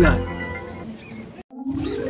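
A lion roar sound effect with a deep rumble, laid over the scene and dying away within about a second. It breaks off into a moment of dead silence at an edit.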